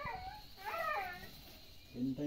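A dog whining: one short, high-pitched whine that rises and falls, about half a second in.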